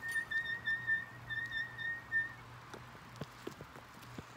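A high whistle holding one note for about two seconds, with slight wavers and a brief break, then stopping, over a steady low hum.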